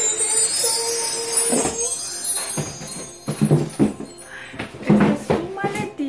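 Background music, with a high chiming, bell-like shimmer over a held note in the first two seconds or so, and a voice-like line in the second half.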